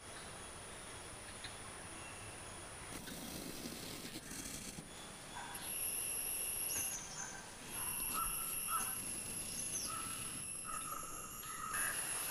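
Outdoor nature ambience: a steady, high-pitched insect drone, with short bird chirps and calls through the second half.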